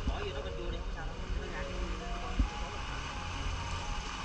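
Faint voices over a steady low rumble, with one soft knock about two and a half seconds in.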